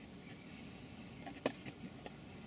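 Quiet car-cabin room tone with a faint hiss, broken by one small, sharp click about one and a half seconds in.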